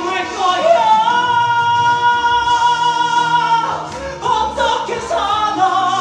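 A solo voice sings a musical-theatre song over an orchestral backing track. About a second in, the singer holds one long high note with vibrato for roughly three seconds, then carries on into shorter phrases.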